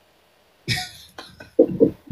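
A single short cough about two-thirds of a second in, followed near the end by a few short voiced sounds.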